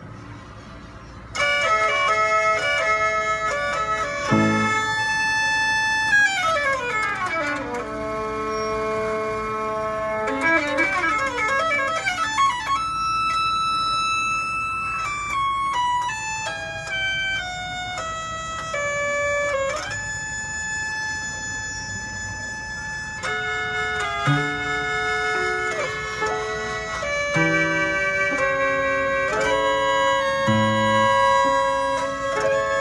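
Antique automatic violin-and-piano machine playing a tune, a mechanically played violin over piano accompaniment. It starts after a short pause about a second and a half in, and has several long sliding violin notes a few seconds later.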